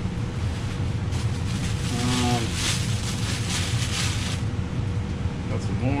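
Packing paper crinkling and rustling as a cut-glass shaker is unwrapped, loudest from about two to four seconds in, over a steady low rumble.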